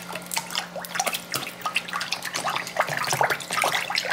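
Water splashing and sloshing in a plastic tub in quick, irregular strokes as a gloved hand stirs hair dye into it to break up clumps.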